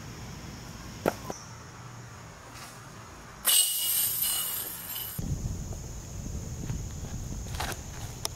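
Two sharp knocks about a second in: a thrown golf disc striking the metal disc golf basket. A loud, harsh high hiss starts and stops abruptly in the middle, followed by low wind rumble on the microphone with small knocks.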